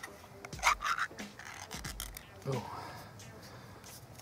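Metal ring-pull lid being peeled back off a small tin, making a few short scraping, tearing rasps.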